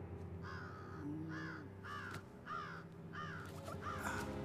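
A crow cawing about six times in a quick regular series, each caw a short arched call, over a low steady drone.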